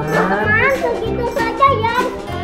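Young children's high voices calling out over background music with a steady beat.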